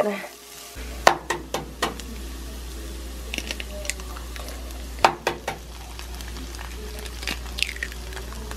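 Diced onion sizzling in butter in a nonstick frying pan, with a few sharp knocks on the pan about a second in and again about five seconds in as a wooden spoon is put down and eggs are cracked and dropped into the pan.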